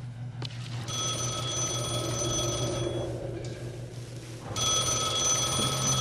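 A desk telephone rings twice, each ring about two seconds long with a short pause between, over a steady low hum.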